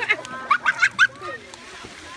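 High-pitched laughter, a quick run of short bursts that stops about a second in, followed by quieter poolside background.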